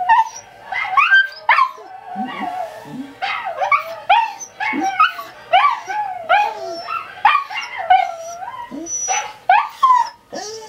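Scottish terriers giving a rapid, continuous string of short high-pitched barks and whines, several a second, each rising and falling in pitch, with a few lower calls in between.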